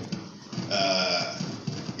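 A man's voice: one drawn-out hesitation sound, about a second long, between pauses in his speech.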